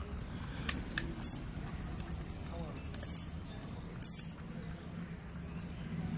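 Metal spanners clinking against each other a few times as they are handled, with a short louder rattle about four seconds in, over a low steady background hum.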